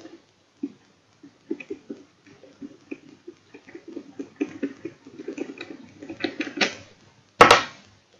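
Clear plastic waterproof housing of an action camera being handled and fiddled with: a string of small irregular plastic clicks and taps, then one sharp, loud snap near the end as the housing comes apart.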